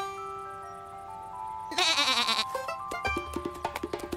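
A cartoon sheep's short bleat, falling in pitch, about halfway through, over held music notes. A plucky, rhythmic music cue starts near the end.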